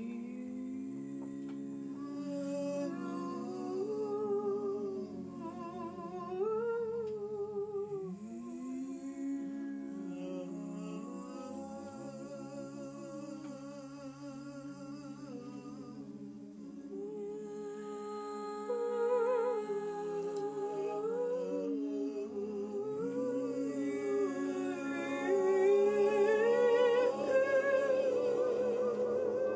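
Several voices humming and singing without words in an improvised group: low held notes underneath, with wavering melodies that slide up and down on top. It swells louder near the end.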